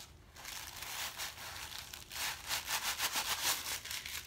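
Paper stuffing rustling and crinkling as it is worked out of the toe of a new knit sneaker, along with hands rubbing the shoe. The rustling comes in quick scratchy strokes and grows louder about halfway through.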